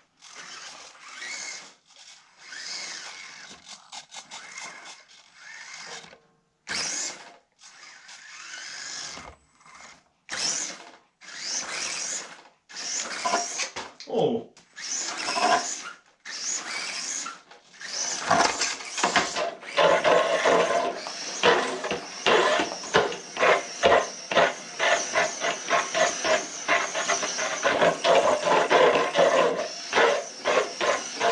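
Small electric RC crawler's motor and gear drivetrain whirring in repeated short throttle bursts, with tyres scrabbling on a concrete floor. From about two-thirds of the way in, it runs continuously with fast clicking and rattling.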